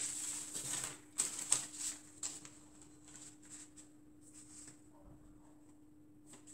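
Clear plastic curved ruler being slid and repositioned across paper pattern pieces on a table: a soft scraping rustle, then several light clicks and taps as it is set down and adjusted, fading to small scattered handling noises.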